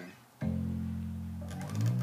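Electric bass guitar: a low note (the F on the first fret of the E string) is plucked about half a second in and held, then slid up the string near the end with a little string and fret noise, toward the high F.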